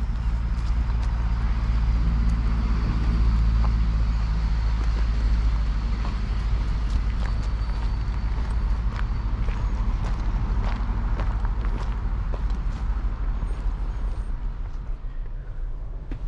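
Steady low rumble of a motor vehicle's engine running nearby, over outdoor traffic noise, with scattered light ticks.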